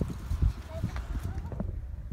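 Irregular low thumps and knocks, with faint voices talking in the background.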